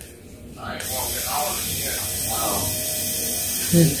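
Pen-sized electric nail drill with a sanding band bit switching on about a second in and running steadily with a high, hissing whir.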